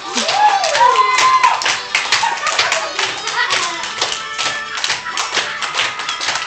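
A group of young children clapping along in time, a steady beat of about three claps a second, with music playing underneath.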